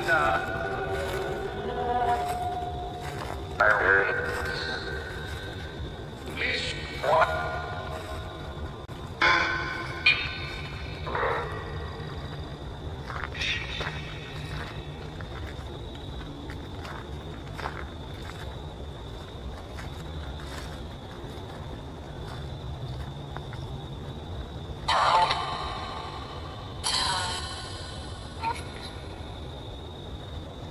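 Necrophonic spirit-box app playing through a phone speaker: short, garbled voice-like fragments chopped out every second or two, over a steady high tone.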